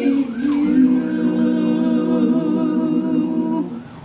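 Small worship group singing in harmony with acoustic guitars. A short sliding vocal phrase comes about half a second in, then a held closing chord fades out just before the end.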